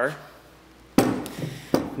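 A large car-audio subwoofer being handled, its frame knocking once sharply against a hard surface about a second in, followed by a lighter click near the end.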